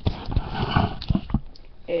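Handling noise: a few dull knocks and a brief rustle as a cellophane-wrapped pack of patterned paper is picked up and held up, dying down about a second and a half in.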